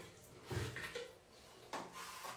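Faint handling noises of a plastic tub and putty being scooped into it: soft knocks and scrapes in two short spells, about half a second in and near the end.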